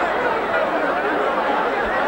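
Rugby league stadium crowd chattering: a steady, even murmur of many voices with no single voice standing out.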